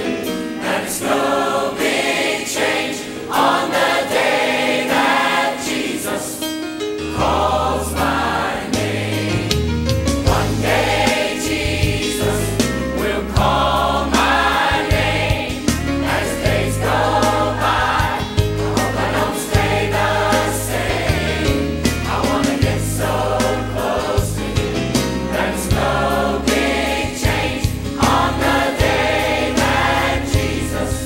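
Church choir of men and women singing a gospel song with instrumental accompaniment. Deep bass notes join the accompaniment about seven seconds in.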